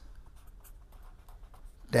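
Pen writing on paper: faint, short scratching strokes of the nib.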